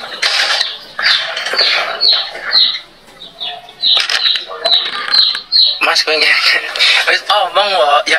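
A man's voice and laughter close to the microphone, with a run of short, high, falling chirps about twice a second from an unseen source during the first six seconds.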